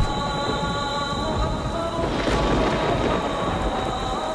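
Film score of sustained held chords over the noise of heavy rain and a low thunder-like rumble, with a short noisy whoosh about two seconds in.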